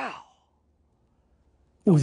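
A man's short sigh-like vocal sound, rising then falling in pitch, at the very start, then near silence. Speech starts just before the end.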